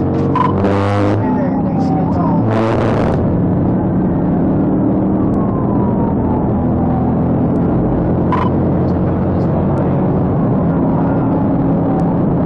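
Police cruiser at highway speed heard from inside the cabin: a steady engine-and-road drone, with two short bursts of hiss in the first three seconds and a brief beep about eight seconds in.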